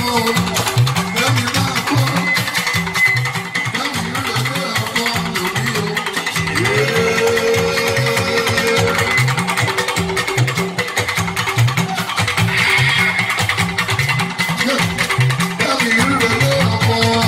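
Live band music with electric guitars over a steady, repeating bass line; a long held note comes in about six and a half seconds in.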